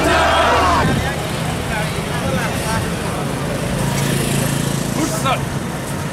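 Crowd of marchers shouting a slogan together, which breaks off about a second in, then a din of scattered voices over a low steady hum of traffic engines.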